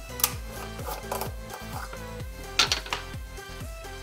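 Background music, over which a small metal tin is opened by hand: a few sharp metallic clicks, the loudest about two and a half seconds in.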